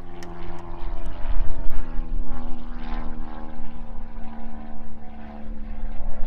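A steady, pitched engine drone over a low rumble.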